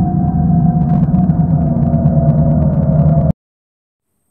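Intro sound-design drone: a low, steady rumble with a held tone over it and a faint crackle, cutting off suddenly about three seconds in.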